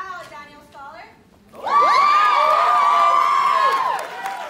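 A crowd of women breaks into loud, high-pitched cheering and screaming about a second and a half in, many voices held together for about two seconds before cutting off near the end. Before it, a few voices talk.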